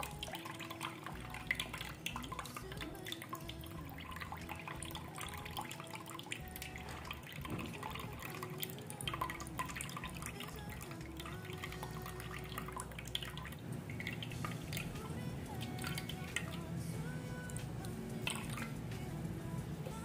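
Blended juice poured from a glass jug through a small plastic strainer, trickling and dripping into a bowl, under soft background music.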